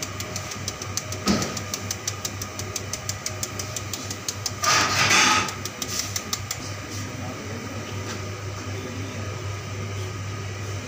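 A metal sieve being tapped over and over, about four or five quick taps a second, as purple powder is sifted onto a glazed cake. There is a thump a second or so in, and a louder brief rustle about five seconds in, over a steady low hum.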